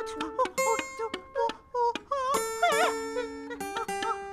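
Acoustic guitar played freely: single plucked notes and short runs, each left to ring on.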